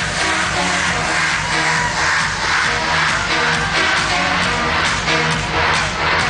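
Electronic dance music from a trance DJ set, played loud over a club sound system, with a steady beat and held synth tones.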